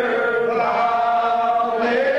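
Unaccompanied congregation singing a Primitive Baptist lined hymn in the slow, drawn-out old style. The voices move from a lower note up to a higher held note about half a second in.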